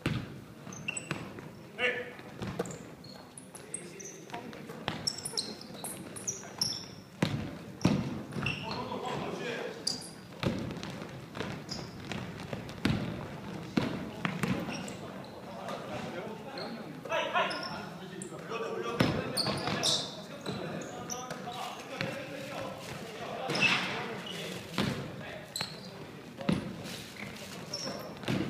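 A basketball bouncing again and again on a hardwood gym floor, each bounce sharp and echoing in the large hall, with players' voices calling out between them.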